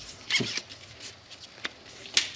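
Carbon-fibre telescopic tenkara rod being handled and collapsed to a shorter length: a few short rubbing strokes of the sections sliding together about half a second in, then a single light click.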